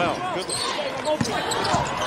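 Basketball arena game sound: crowd murmur with a basketball bouncing on the hardwood court.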